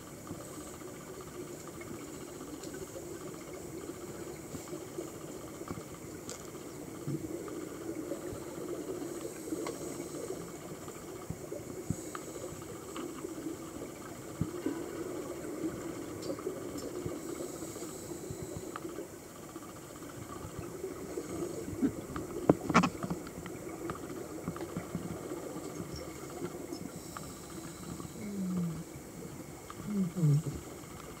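Underwater ambience of scuba divers: a steady hiss of regulator breathing and rising exhaust bubbles, with scattered crackles and one sharp click about three-quarters of the way through.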